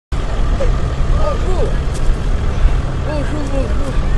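Men talking faintly over a loud, steady low rumble.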